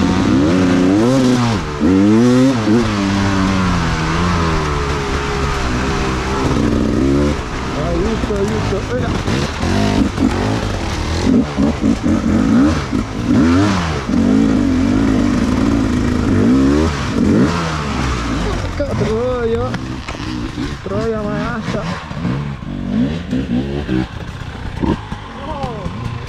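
Enduro motorcycle engines being ridden off-road, the engine note rising and falling again and again as the throttle is opened and closed through tight hairpin turns.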